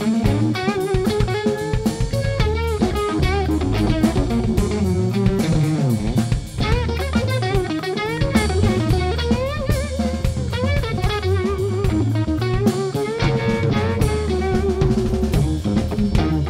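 Live rock band playing: a lead line on a Stratocaster-style electric guitar, its notes bending and wavering, over a drum kit with snare hits and a bass guitar.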